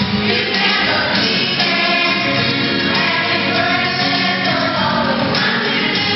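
A children's choir singing with musical accompaniment, loud and continuous.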